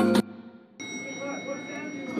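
Latin-style background music cuts off about a fifth of a second in. After a short gap, a steady high ringing tone sets in and holds, with faint voices under it.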